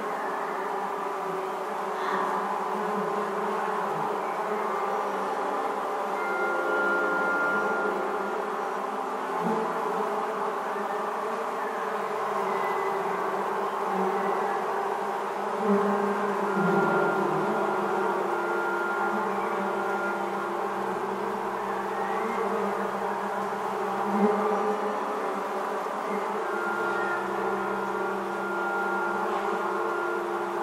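Many honeybees buzzing together in a swarm: a steady, dense drone, with a few higher held tones coming and going over it.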